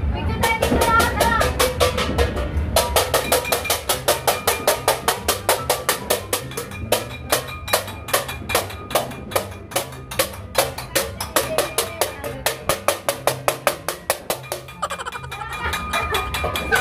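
Metal cooking pots banged rapidly and steadily, about five ringing clangs a second, starting about three seconds in, pausing briefly near the middle and stopping near the end. This is New Year noise-making to welcome the new year. Voices and laughter are heard at the start and end.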